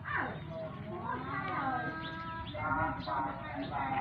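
High-pitched voice vocalizing: a sharp falling cry at the start, then a long drawn-out call that rises and holds, then quick chattering syllables.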